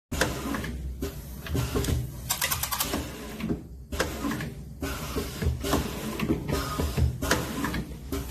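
Pneumatic single-colour pad printer running its print cycle: the silicone pad carriage moving back and forth, with repeated mechanical clacks and short bursts of hiss about once a second.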